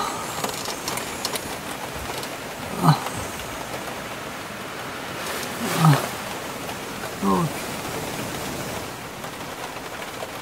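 Rain falling steadily on the car, with three short moans from a cold, shivering man, each falling in pitch, about three, six and seven seconds in.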